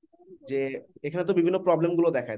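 A man's voice talking, after a short pause at the start that holds only a faint low hum.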